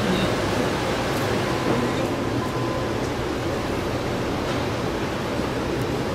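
Steady, even background noise, a hiss with a low rumble, with no distinct events.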